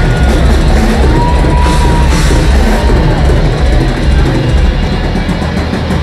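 Live industrial metal band playing at full volume: distorted guitars, bass and a drum kit, with a held high note from about one to two and a half seconds in.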